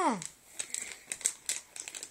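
Soft plastic baby-wipes packet crinkling in short, irregular crackles as a baby's hand grabs and pats it.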